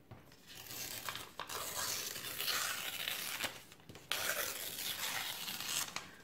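A sheet of paper being torn slowly along the wavy edge of a tear ruler, in two long pulls with a short break about four seconds in.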